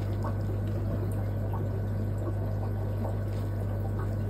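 Steady low hum of running aquarium equipment, with faint trickling water and a few light ticks.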